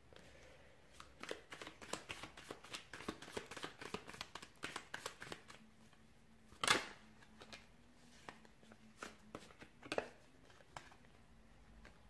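Tarot cards shuffled by hand: a quick run of soft card snaps for about four seconds, then one louder slap past the middle. Near the end come a few light taps as cards are laid down on a cloth-covered table.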